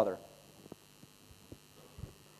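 A man's spoken word ending right at the start, then a pause holding only a faint steady hum and a few soft ticks.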